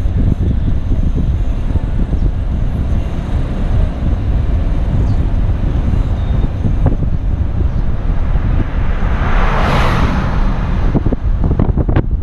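Car driving slowly, with road noise and wind buffeting the microphone making a steady low rumble. A rushing hiss swells and fades about ten seconds in.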